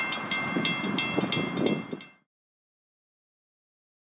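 Light rail level-crossing warning bell ringing in quick, even strikes, about four a second, over a low rumble; it cuts off abruptly about two seconds in.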